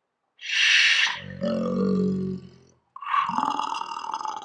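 A man's voice slowed and pitched far down as an effect, drawling "slooow jam": a drawn-out hissing "s", a long, deep "ooow", then a falling "jam" that trails off.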